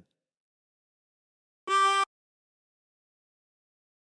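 A single short blow note, a G, on a 24-hole tremolo harmonica in C, held steady for under half a second about a second and a half in.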